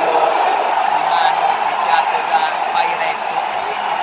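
A man talking in Italian over the steady roar of a stadium crowd.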